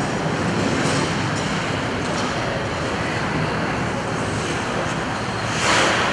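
Steady background noise of an ice rink during the skaters' warm-up, with a short, louder hiss near the end from a skate blade scraping the ice.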